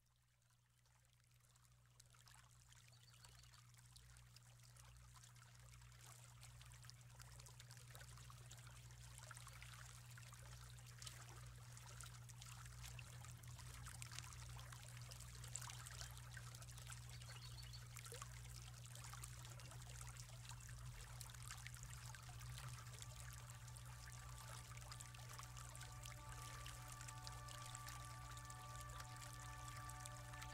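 Recorded sound of rippling, trickling water at the opening of a song, fading in from near silence and slowly growing louder, faint throughout, over a steady low hum. Sustained instrument notes begin to come in near the end.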